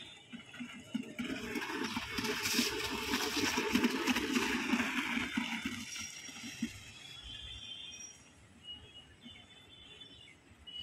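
A rubber tyre dragged on a rope across a dirt ground, giving a rough, grainy scrape. It swells about a second in, is loudest in the middle and fades away over the last few seconds.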